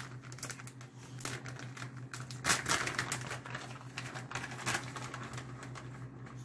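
Plastic bag of shredded cheddar cheese being handled and opened: scattered crinkles and light clicks, loudest about halfway through.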